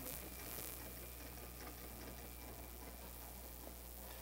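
Steady tape hiss with a low, even mains hum, the background noise of an old cassette recording, with no other distinct sound.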